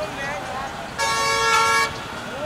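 Vehicle horn sounding once about a second in, a steady single-pitched blast lasting just under a second.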